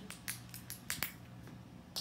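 A squirrel gnawing a nut: a run of sharp, irregular crunching clicks, about eight in two seconds, as its teeth work the shell.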